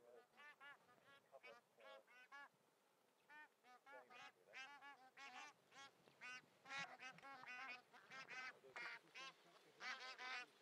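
A flock of bar-headed geese honking, many short calls overlapping, faint throughout and coming thicker from about halfway through.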